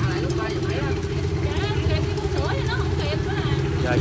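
Small underbone motorbike engine idling steadily close by, with people talking in the background.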